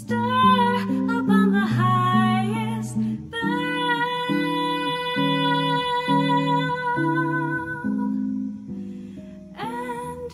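Woman singing a slow ballad to a hollow-body archtop jazz guitar playing chords. She holds one long note for several seconds in the middle; near the end the voice drops out briefly while the guitar carries on, then comes back in.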